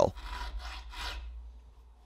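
Round file rasping in notches along the spine of a 1095 high-carbon steel knife blade, cutting the jimping; a couple of strokes that fade out.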